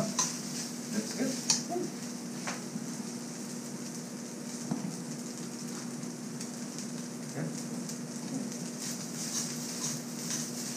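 Cooked rice stir-frying in a metal wok: a steady sizzle, with a metal spoon scraping and clicking against the pan a few times, mostly early on. A steady low hum runs underneath.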